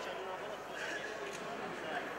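Indistinct overlapping voices of people talking and calling out in a large sports hall, with no single clear speaker.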